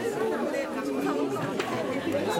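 Crowd chatter: many people talking at once in overlapping voices.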